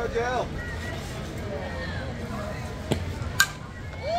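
Softball bat striking a pitched ball: a sharp crack near the end, just after a fainter knock, with spectators' voices around it.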